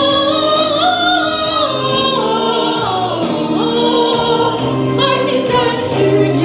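A woman singing a Chinese song into a microphone, holding long notes with vibrato over instrumental accompaniment.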